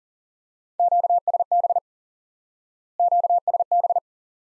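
Morse code sent at 40 words per minute as a steady tone of about 700 Hz, keyed in fast dits and dahs: two words, about a second each, with a pause of about a second between them. They spell the abbreviation QSB, sent twice.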